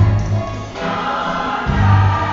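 Gospel choir music with a deep, steady bass line; the massed voices swell about a second in.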